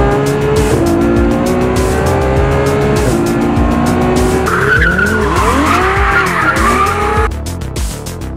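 Ferrari sports car engine pulling hard, its pitch stepping down twice as it shifts up, then revving up and down with tyres squealing as the car drifts. The car sound cuts off suddenly near the end, over electronic music with a steady beat.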